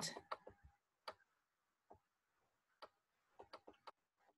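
Faint, irregular clicks and taps, about ten, spaced unevenly and bunched near the end, from a stylus on a writing tablet as words are handwritten.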